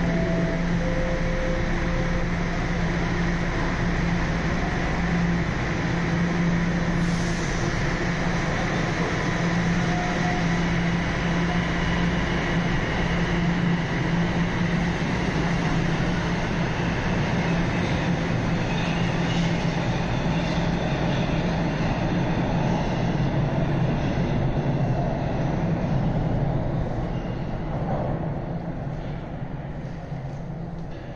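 Toronto Rocket subway train: a falling three-note door chime at the start, then the train running out of the station with a steady low motor hum and rolling noise that fades near the end.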